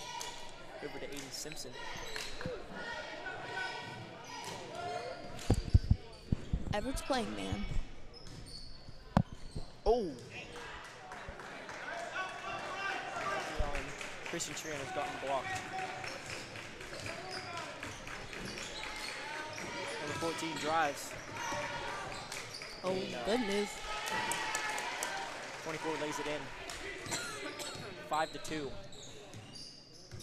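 Basketball game sounds in a gymnasium: a basketball dribbled on the hardwood court, with a few sharp loud thuds about six and ten seconds in, over steady crowd chatter and shouts from the stands.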